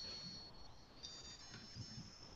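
Home-built open-source cell phone's ringer buzzer playing a short run of high-pitched notes in a hand-keyed piano mode, the pitch stepping from one note to the next with a brief pause near the middle. Faint, as heard over a video call.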